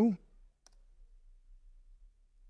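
A single faint computer mouse click about half a second in, against quiet room tone.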